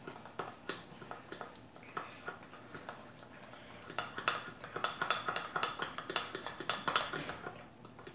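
Metal spoon stirring hot sugar syrup for hard candy in a glass bowl, clicking and scraping against the glass. The taps come quicker and louder from about halfway through.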